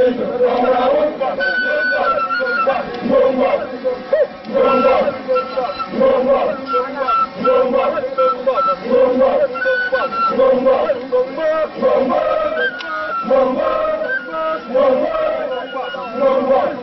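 A large group of men chanting together in unison as they march, with a high piping melody of short held notes over the voices.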